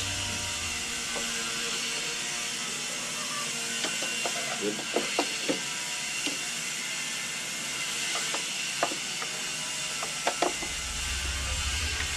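Screwdriver working screws on a Honda Beat scooter: scattered light clicks and scrapes in two clusters, one before the middle and one late, over a steady hiss.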